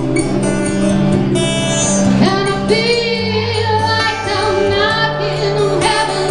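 A woman singing a slow rock ballad live, with acoustic guitar and double bass accompanying her; the bass holds low notes that change every second or two.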